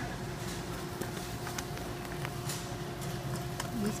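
Steady machine hum with two held tones, with a few faint rustles and clicks from a paper coffee bag being handled at a grinder spout.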